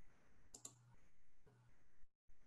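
Near-silent room with two quick soft clicks about half a second in and a fainter click about a second later, from a computer being operated.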